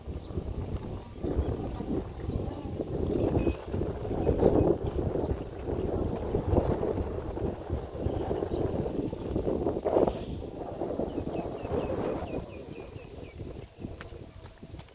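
Wind gusting against the microphone, a rumbling rush that rises and falls, with a sharp click about ten seconds in.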